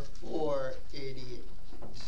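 Speech only: a man's voice, announcing a hymn number.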